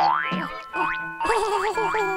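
Cartoon boing and rising-glide sound effects over light mallet-percussion music: a quick upward glide just at the start, then a wobbling boing with two more upward glides in the second half.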